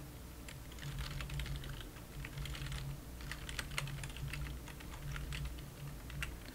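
Typing on a computer keyboard: a quick, irregular run of key clicks, over a faint low hum.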